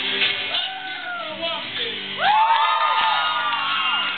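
Live rock band: the singer's voice slides through two short arching phrases over the guitar, then about two seconds in rises into one long held note that drops away near the end, while the guitar thins out beneath it.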